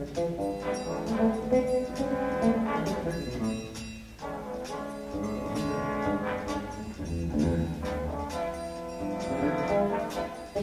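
Big band jazz ensemble playing, its brass section to the fore, with a brief dip in volume about four seconds in.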